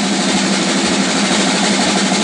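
Drum kit played in a fast, continuous roll, its strokes running together into one steady, loud wash of drum and cymbal sound.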